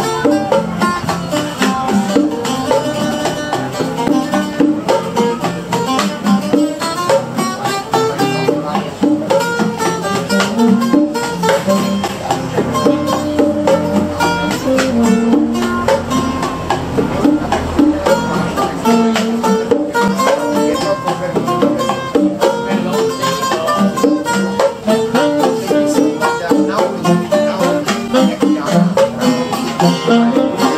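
Live band playing: guitars strummed and picked, with bongos and saxophone, a steady rhythm throughout.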